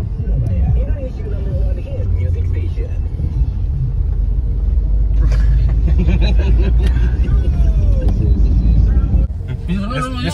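Low, steady road and engine rumble inside the cabin of a moving car, with faint voices over it; the rumble drops off suddenly near the end.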